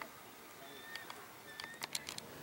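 Quiet outdoor background with a few faint clicks and two brief, faint whistle-like tones near the middle.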